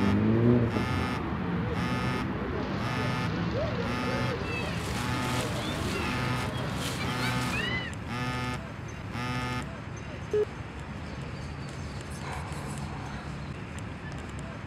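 Samsung smartphone ringing with an incoming call: a short ringtone note repeating at an even pace, a little faster than once a second, that stops about nine and a half seconds in.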